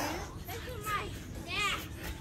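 Children's voices calling and shouting in the distance, with a short sharp slap right at the start.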